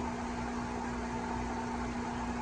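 Steady hum of fish-holding equipment: one constant low tone over an even hiss.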